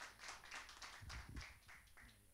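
Faint, quick clapping from a few people that dies away near the end.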